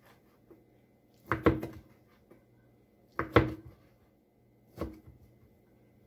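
Kitchen knife chopping through a stack of sliced ham onto a cutting board: three separate knocks, each about a second and a half apart.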